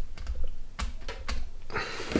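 Resin model-kit fuselage halves being squeezed together and handled, giving a few small, irregular clicks and taps of hard resin parts against each other, over low handling rumble.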